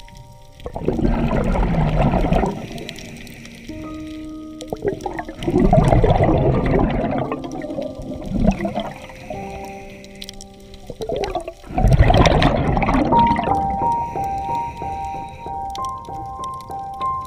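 Scuba diver's regulator exhalations: three loud bursts of bubbling a few seconds apart. Under them runs background music of held notes that change pitch in steps, ending in a repeating two-note figure.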